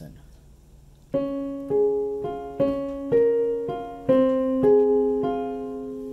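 Piano intro of a song's backing track: after a short pause, a repeated figure of single notes struck about twice a second, each ringing and fading before the next.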